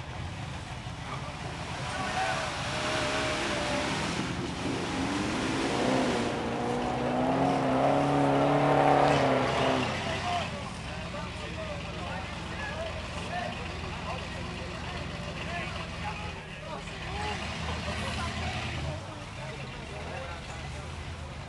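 Off-road buggy engine revving hard in a mud hole, climbing in pitch and loudness to a peak about nine seconds in, then dropping back to a lower run with people talking.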